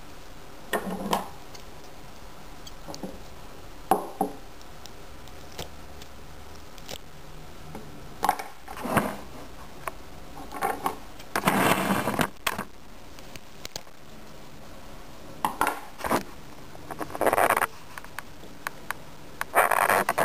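Scattered short clinks, knocks and scrapes of small glass jars and kitchen scissors handled on a tabletop, as coleus stems are snipped and set into jars of water. There is a longer, noisier scrape about halfway through.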